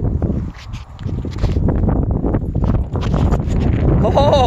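Wind buffeting the phone's microphone as a heavy low rumble, with irregular thumps and rustles of footsteps on grass and the phone being handled.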